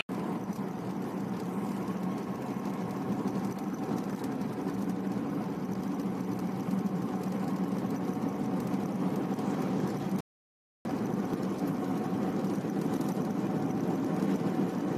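Steady drone of a car's engine and tyres on the road, heard from inside the moving car's cabin, broken once by a half-second gap of silence about ten seconds in.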